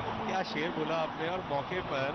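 A man speaking, TV commentary, over steady crowd noise in a cricket stadium.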